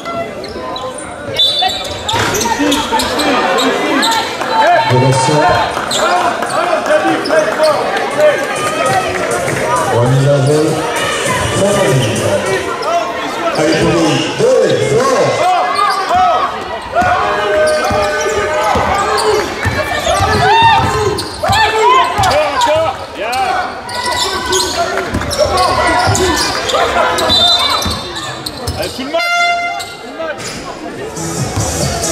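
A basketball bouncing on a wooden gym floor, with voices of players and spectators echoing in a sports hall. There are a few short high tones near the start and near the end.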